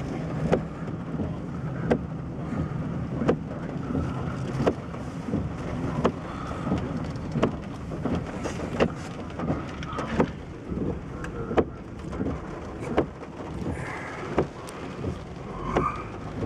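Inside a slowly moving car in the rain: a low steady engine and road rumble with irregular taps of raindrops on the body and glass. A stronger soft knock recurs about every second and a half.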